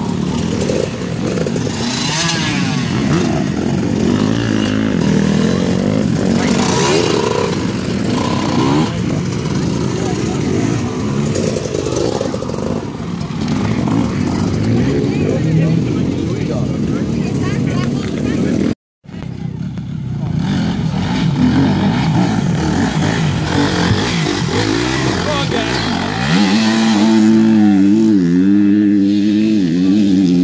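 Off-road dirt-bike engines revving and easing off as riders work their way round an enduro-cross course. The sound cuts out for a moment about two-thirds of the way through. Near the end a bike close by runs at a steady, slightly wavering engine note.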